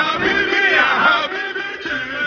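Several men shouting and singing together in a rowdy chorus, with music playing underneath.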